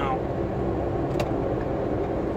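Steady road and engine noise of a car, heard from inside the cabin while driving, with one brief click a little after a second in.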